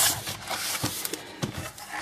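Hands pressing the plastic memory-bay cover back onto the underside of an Asus Eee PC 1015B netbook, then turning the netbook over on the table: a string of light clicks and rubbing.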